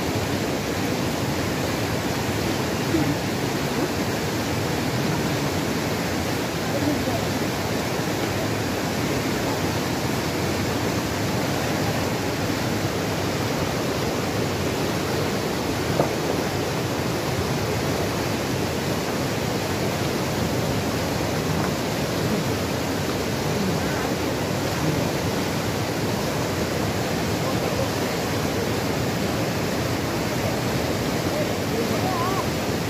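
Fast glacial river in spate rushing over rocks: a steady, loud roar of white water. Men's voices are faintly heard over it, and there are brief knocks twice.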